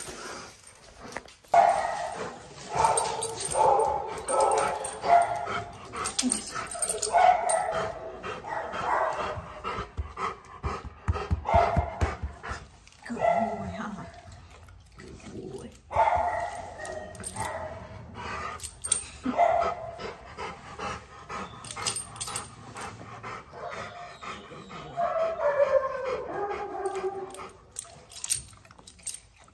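Rottweiler barking and vocalising in a run of drawn-out, pitch-bending calls, with one long falling call near the end.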